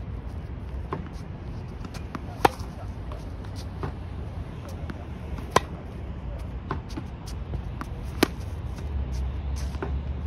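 Tennis racket striking the ball on forehand shots: three sharp pops about three seconds apart, with fainter knocks between, over a low steady outdoor rumble.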